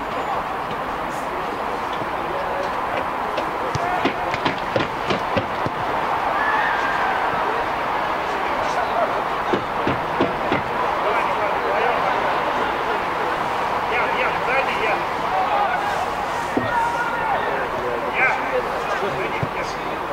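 Indistinct shouts and chatter of players across an outdoor football pitch over a steady background hum, with a cluster of sharp knocks about four to five seconds in.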